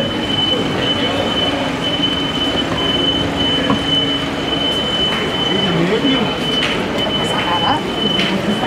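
Street ambience with indistinct voices of passersby and people at café tables over a steady wash of town noise. A thin steady high-pitched tone sits above it, and a few light clicks come near the end.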